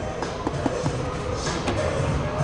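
Background music in a large store over a steady low room rumble, with a few faint taps.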